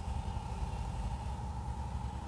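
Steady low background rumble with a constant mid-pitched hum running under it, and no sudden sounds.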